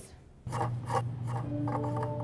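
A brief quiet, then a low steady hum starts about half a second in, with several short scraping, rasping strokes over it. A few held tones come in near the end.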